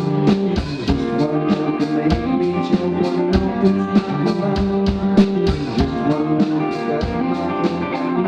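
A live rock band playing: electric guitars, bass guitar and drum kit, with steady drum hits through sustained guitar chords.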